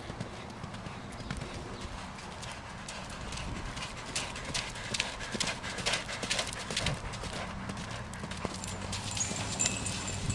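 Hoofbeats of a barefoot Thoroughbred mare cantering on sand footing. The beats grow loudest about four to seven seconds in as she passes close by.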